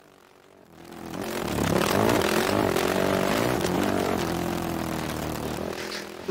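Sport quad (ATV) engine running and revving as the quad rides a dirt track, its pitch rising and falling with the throttle. It fades in about a second in and eases off a little near the end.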